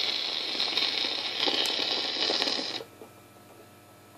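Surface noise of a 78 rpm shellac record, a steady hiss with crackles, as the stylus runs in the lead-out groove after the music has ended. About three seconds in it cuts off suddenly as the tonearm lifts, leaving only faint mechanical clicking from the turntable.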